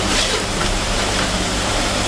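Chopped onion sizzling gently in a frying pan over low heat, a steady hiss.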